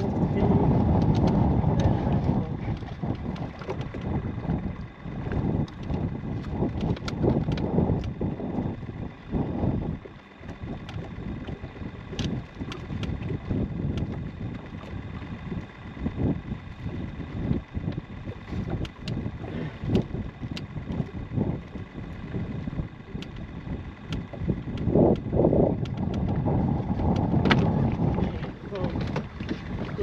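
Wind buffeting the microphone over lapping water, with knocks, rustles and clicks as a walleye is netted and handled in a rubber landing net aboard an aluminum boat. A faint steady whine sits underneath.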